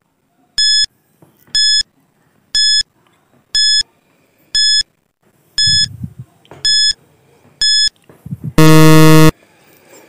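Countdown timer sound effect: a short electronic beep once a second, eight times, then a loud buzzer lasting under a second near the end, signalling that time is up.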